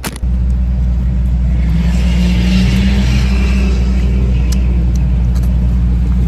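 Car engine running at a steady idle, heard from inside the cabin as a loud, even low rumble that sets in suddenly just after the start.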